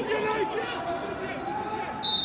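Footballers' voices calling out to one another on the pitch, several overlapping, with no crowd noise around them.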